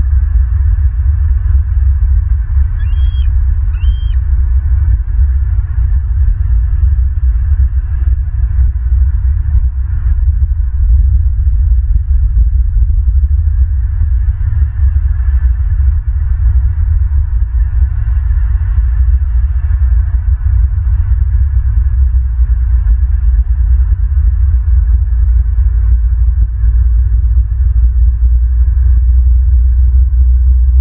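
Heavy, unsteady low rumble of wind buffeting an outdoor microphone, with two short high bird calls about a second apart near the start.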